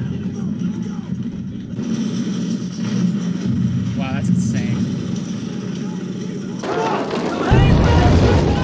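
A war drama's soundtrack: a steady low music bed under soldiers' shouted dialogue, with a sudden loud low rumble starting about half a second before the end.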